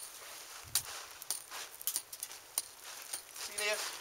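Small pick-hammer striking and picking at a dry dirt bank, a run of irregular sharp knocks as loose earth is chipped away.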